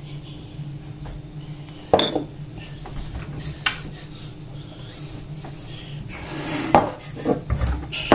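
Glass beer bottle and pint glass clinking and knocking as they are handled on a kitchen worktop: one sharp clink about two seconds in, a few faint knocks, then a clatter of clinks near the end.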